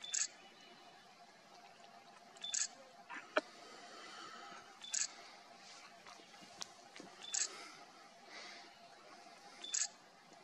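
A digital camera's short beep and shutter sound, repeating at an even pace about every two and a half seconds, five times, as it takes a series of shots. A faint steady hum lies underneath.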